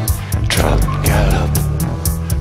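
Live band music: a steady beat over a deep bass line with electric guitar, and a falling, swooping sound about half a second in.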